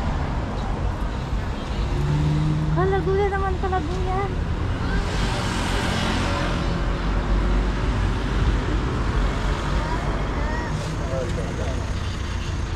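City street traffic: cars driving past with a steady engine and tyre rumble, one vehicle passing close about five to seven seconds in. Voices are heard briefly about three seconds in.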